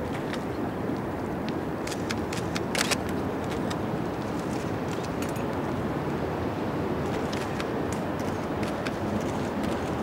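Steady outdoor background noise with scattered sharp clicks, including a quick cluster of them two to three seconds in.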